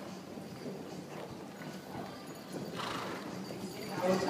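Hoofbeats of ridden horses passing close by on the footing of an indoor riding hall, growing louder near the end as one goes right past.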